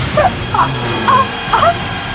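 A series of short, high whimpering yelps, about four in two seconds, each sliding in pitch, over background music.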